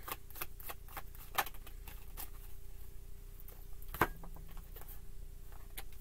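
Tarot cards being shuffled and handled by hand: a run of light, irregular clicks and flicks of card edges, with sharper snaps about a second and a half in and again about four seconds in.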